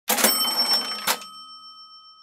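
Intro sound effect: a rattling, clattering burst lasting about a second that ends in a sharp clack, followed by a bell-like ring that slowly fades away.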